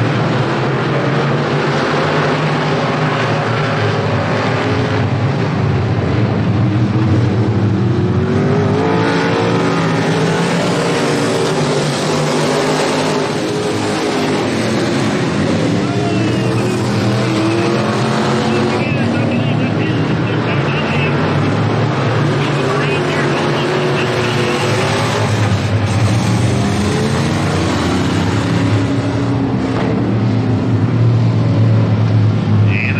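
Dirt-track race car engines running as the cars circle the oval, their pitch rising and falling as they pass and rev through the turns.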